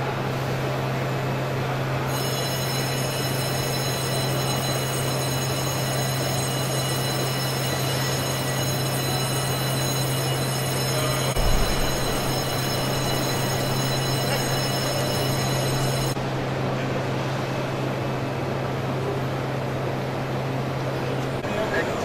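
Steady machinery hum and noise inside a hydroelectric power station hall, with a strong low drone underneath. A set of high whining tones comes in about two seconds in and cuts off about sixteen seconds in, and there is a single low thud a little past the middle.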